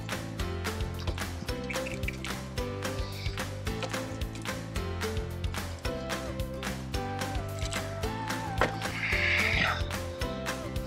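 Background music with a steady beat and sustained melody notes. A brief burst of noise rises above it near the end.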